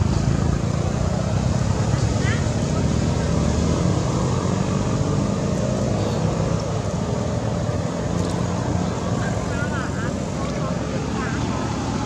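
Steady low outdoor rumble with indistinct voices, broken by a few short high chirps.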